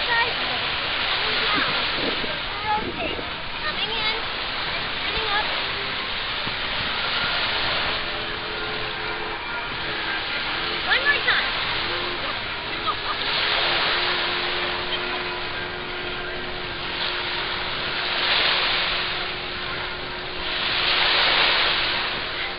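Small waves washing onto a sandy beach, the surf swelling and falling back several times, with voices of bathers nearby.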